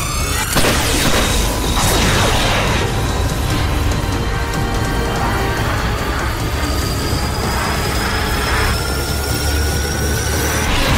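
Cartoon fight soundtrack: dramatic background music mixed with sci-fi energy-blast effects and booms. A sweep comes at the start and falling swooshes follow about two seconds in. A high whine rises slowly through the second half.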